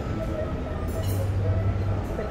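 A steady low mechanical hum, with faint wavering tones above it and a brief hiss about a second in.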